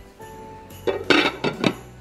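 A glass lid clinking several times against a ceramic slow-cooker crock about a second in, over quiet background music with a few held notes.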